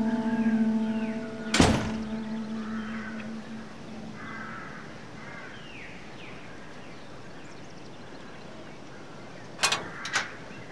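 The tail of a music chord fades out, and a door shuts with a single thud about a second and a half in. Then birds call now and then over a quiet outdoor background, and two sharp clicks come near the end.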